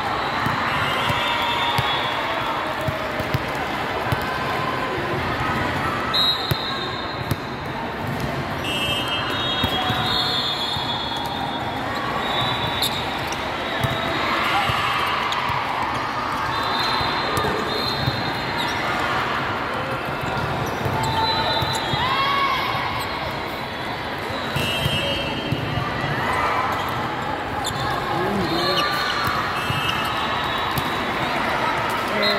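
Indoor volleyball play: balls being hit and bouncing on a court floor, and many short, high sneaker squeaks, over a steady hubbub of players' and spectators' voices.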